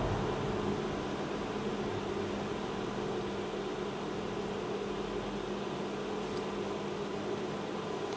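A sodium carbonate electrolysis bath fizzing and bubbling steadily as gas comes off the electrodes under a heavy current of about 30 amps from a DC stick welder, over a low, steady hum from the welding machine.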